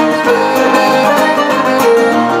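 Live Irish folk music over a stage PA: button accordion playing a lively melody over strummed acoustic guitar.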